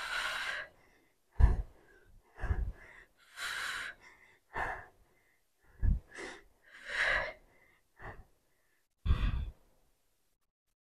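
A woman's heavy, laboured breathing from the exertion of dumbbell split squats: hard exhales and inhales about once a second, several hitting the clip-on microphone with a low thump.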